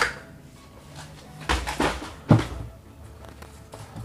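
Handling noise as a pair of sneakers is picked up and set down on a table: a click at the start, some rustling and thudding about halfway through, and a sharp knock a little after two seconds.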